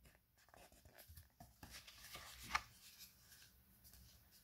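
Near silence: small-room tone with faint rustles and one slightly louder tick about two and a half seconds in.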